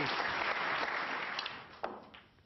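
Audience applauding, the clapping dying away near the end, with one sharp click just before it stops.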